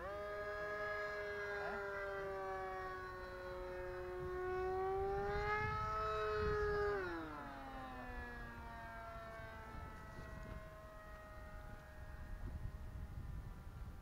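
Electric motor and propeller of an E-flite Scimitar radio-controlled model plane in flight, a steady whine. About five seconds in it rises and grows louder, then around seven seconds its pitch drops sharply and it fades.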